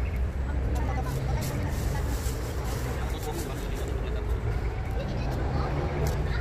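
Outdoor city ambience: a steady low rumble with faint voices in the background.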